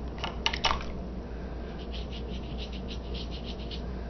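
Wet paintbrush scrubbing back and forth over paper in quick strokes, several a second, with two sharp clicks about half a second in.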